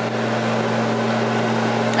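A running machine hums steadily and evenly in the background, with a low drone and a hiss of moving air.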